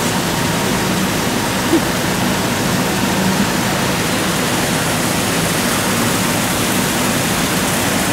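Steady rush of running water from a pond's water feature, an even wash of noise with no breaks.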